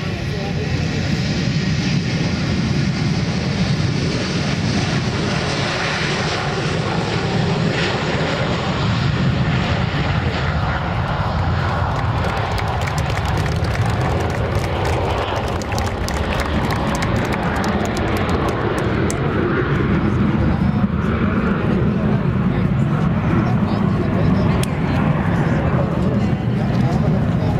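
Airliner taking off: continuous, loud engine noise as the plane lifts off the runway and climbs away, with a crackling edge in the second half.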